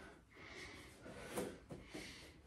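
Faint breathing and soft movement of a person lowering from hands and knees onto the elbows on an exercise mat, with one brief sharper sound about one and a half seconds in.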